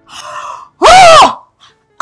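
A woman's breathy gasp, then a loud, high-pitched squeal of excitement lasting about half a second that rises and falls in pitch.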